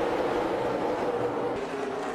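A pack of NASCAR Cup Series stock cars running at full throttle just after a green-flag restart, many V8 engines blending into one steady drone.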